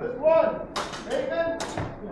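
Two sharp clacks of longswords striking in a fencing exchange, one a little under a second in and one near the end, with a person's voice between them.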